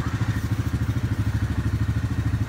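Yamaha Grizzly 700 ATV's single-cylinder four-stroke engine idling with the quad at a standstill, a steady, even pulsing.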